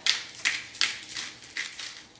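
Seasoning shaken or sprinkled over a bowl of slaw: a quick series of light, gritty strokes, about four a second.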